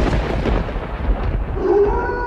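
Thunder sound effect, a loud rumbling crack that slowly dies away. Near the end a steady eerie tone comes in.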